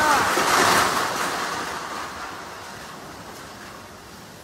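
Typhoon gale and driving rain: a loud gust that eases off over the following seconds.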